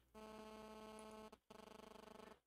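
Near silence with a faint electrical buzzing hum, made of several steady tones. It drops out briefly about a second and a half in, then returns with a slight pulsing.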